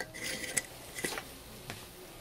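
A few light clinks and knocks of an emptied glass mason jar being tipped and handled, with a brief hiss just at the start.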